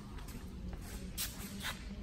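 Faint footsteps on a concrete floor, a few soft steps, over a low steady background rumble.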